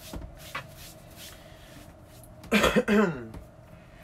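A woman clears her throat once, about two and a half seconds in, with a short falling voiced rasp.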